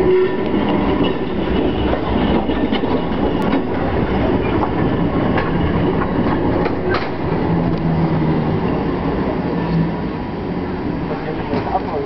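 Heritage two-car tram rolling past on street rails: a steady rumble of steel wheels on track with sharp clicks over the rail joints and a low hum in the middle. The sound eases slightly near the end as the tram moves away.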